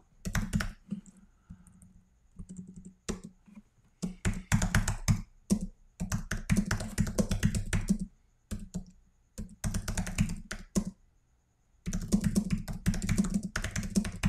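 Typing on a computer keyboard, in quick runs of keystrokes broken by short pauses.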